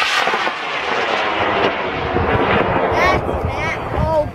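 High-power rocket motor burning just after liftoff: a loud rushing roar that slowly fades as the rocket climbs away. Voices call out near the end.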